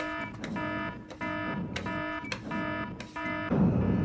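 Electronic alarm beeping in repeated buzzy pulses, about two a second, stopping about three and a half seconds in.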